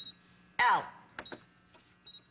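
Control panel of a Singer Special Edition computerized sewing machine: a short high beep at the start, then a couple of sharp button clicks a little over a second in, as keys are pressed to select monogram letters.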